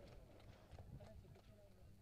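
Near silence: faint background hiss with a low steady hum and a few faint scattered ticks.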